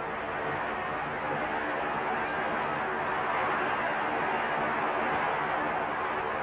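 Crowd noise in a boxing arena, a steady din of many voices that swells a little through the middle, heard through an old soundtrack with the highs cut off.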